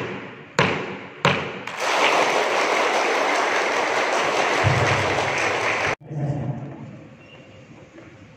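Two sharp knocks of a wooden gavel on the table, a little over half a second apart, closing the customary three strikes that formally open the event. Applause from the room follows and runs for about four seconds before cutting off suddenly.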